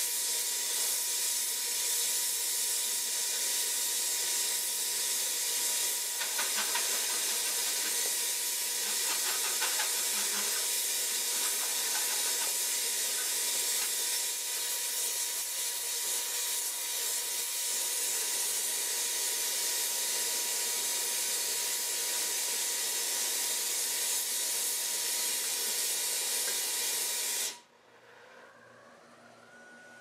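Oxy-acetylene torch flame hissing steadily, then cut off abruptly near the end.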